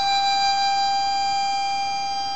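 Diatonic harmonica in C playing one long held note at steady pitch, easing slightly in level toward the end.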